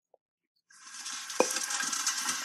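Soundtrack of a film clip starting to play: a steady hissing rustle, as of a group of schoolboys shifting and crowding together, comes in about a second in, with a single short knock partway through.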